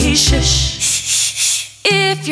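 Instrumental break in a children's song: a rattling shaker rhythm over a faint bass line, about four shakes a second. The music drops out briefly near the end, then the full band comes back in.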